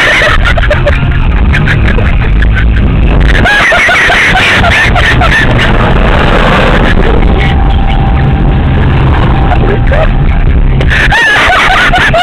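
Car driving, its engine and road rumble heard loud from inside the cabin, with voices shouting or singing over it in stretches, most clearly a few seconds in and near the end.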